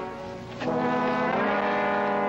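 Dramatic brass-heavy film score: loud, sustained brass chords. A held chord fades at the start and a new one swells in about half a second in, its notes shifting partway through.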